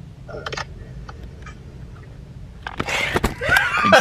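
Two men burst into loud laughter and whooping about two and a half seconds in, over the low steady hum of a car cabin.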